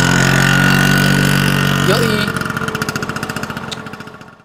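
Motor scooter engine pulling away. A steady engine note holds for about two seconds, then changes into a pulsing putter that fades out.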